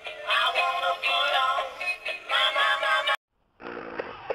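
A song with a lead vocal over music, which cuts off abruptly about three seconds in; after a brief silence, music with singing starts again.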